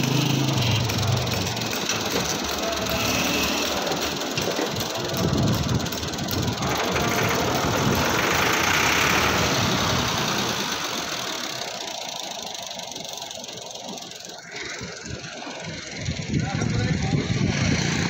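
Massey Ferguson 260 tractor's three-cylinder diesel engine running as the tractor pulls away, fading over several seconds, then growing louder again near the end.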